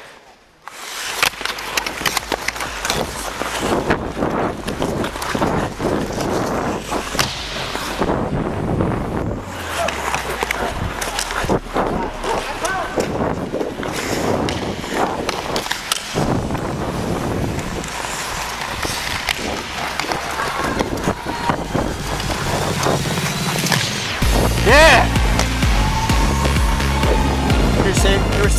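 Ice hockey play heard close up from a helmet camera: skate blades scraping and carving on the ice, with sticks and puck clacking and players calling out. Music with a steady low beat comes in about four seconds before the end.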